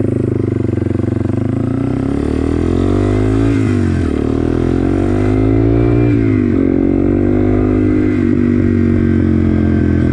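Yamaha TW200's single-cylinder four-stroke engine accelerating as it is ridden. The engine note climbs and drops back twice as it is shifted up, then holds steady at a cruise.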